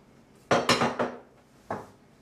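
Crockery and cutlery clattering on a breakfast table as a plate is set down: a quick run of clinks and knocks about half a second in, then one more knock near the end.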